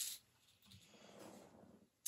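Near silence, with a faint soft rustle of hands moving over paper sticker sheets.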